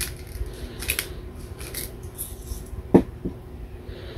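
Hand pepper grinder cracking black peppercorns in a few short scratchy bursts, then a sharp knock about three seconds in, followed by a lighter one.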